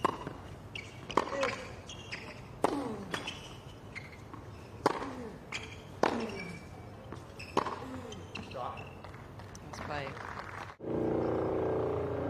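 Tennis rally: racket strikes on the ball about every one and a half seconds, most followed by a player's short grunt falling in pitch. Near the end the sound cuts to a steady background murmur.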